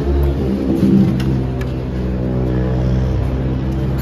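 TVS Apache RR310 race bike's single-cylinder engine running at a steady speed on a paddock stand, briefly louder about a second in.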